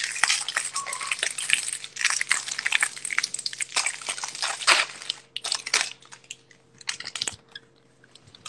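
Close crunching and crackling, dense for about the first five seconds, then thinning to a few scattered clicks.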